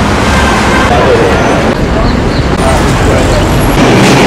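City street traffic noise with people's voices mixed in. The sound changes abruptly twice partway through.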